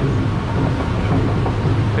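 Steady low mechanical rumble of a Kali River Rapids round raft being carried along the ride's conveyor track, with rushing water beneath it.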